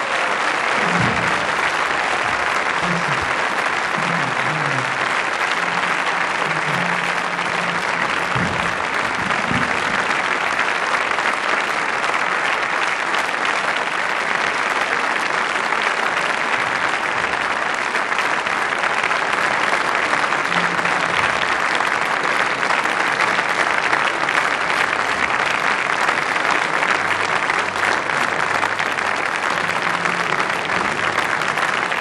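Concert audience applauding steadily and unbroken, a dense even clapping.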